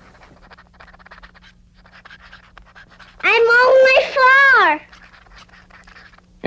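Faint scratching for about three seconds, then a young child's high voice calling out once for about a second and a half, its pitch rising and then falling, followed by more faint scratching.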